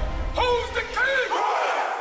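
A group of men shouting, a few loud yells close together that trail off into crowd noise, over music whose bass drops out about halfway through.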